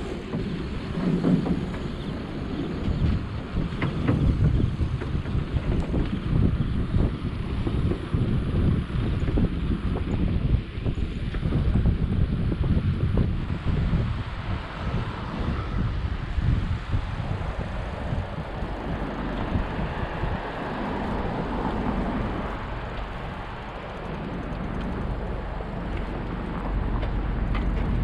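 Wind buffeting the microphone of a camera on a moving bicycle, a gusty low rumble that rises and falls throughout.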